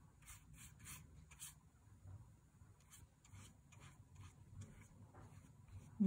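Faint, irregular swishing strokes of a wet half-inch flat watercolour brush brushed across paper, laying down a wash.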